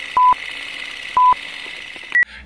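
Film-leader countdown sound effect: short single-pitch beeps, one a second, two in all, over a steady hiss.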